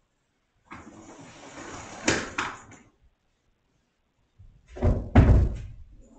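Static-like hiss for about two seconds with a couple of sharp crackles in it, then two heavy thuds in quick succession near the end.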